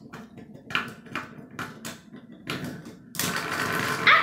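Beyblade spinning-top parts of metal and plastic being handled on a wooden tabletop: a string of separate clicks and knocks as pieces are picked up and set down, turning into more continuous rattling about three seconds in.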